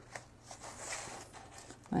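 A large sheet of heavyweight watercolour paper being bent over and folded in half by hand: soft rustling and sliding of the paper, swelling about a second in, with a couple of light ticks before it.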